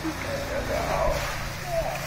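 Thin plastic packaging bag crinkling as it is pulled out of a toy box and handled, under faint voices.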